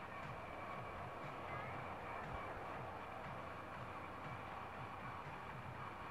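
Faint, steady running noise of an electric train approaching from a distance, with a faint steady high hum over it.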